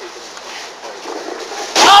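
Low, steady outdoor background hiss with faint distant voices, then a commentator's loud excited "oh" near the end.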